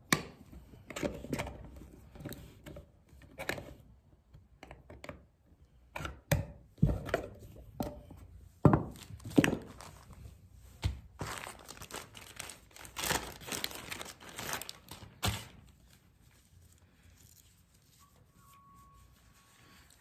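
Clicks and knocks from the lid of a metal wax tin being pried off with a flat tool and set down; the two loudest knocks fall about seven and nine seconds in. Then comes a few seconds of plastic crinkling and rustling as a microfiber cloth is handled from its zip-lock bag.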